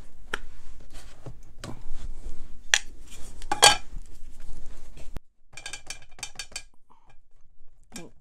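Clicks and clacks of a plastic ink pad case and stamping tools being handled on a craft mat, with a couple of sharper knocks near the middle and a quick run of small clicks after it.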